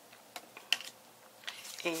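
A few light taps and clicks of cardstock being handled and picked up from a stack of paper pieces, the sharpest tap a little under a second in.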